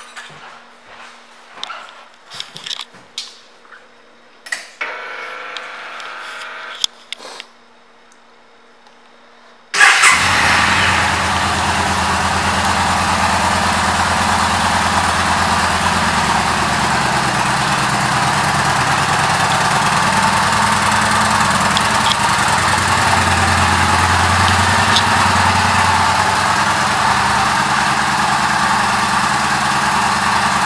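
The 2014 Yamaha Bolt's air-cooled V-twin engine fires up about ten seconds in and then idles steadily, after a few faint clicks.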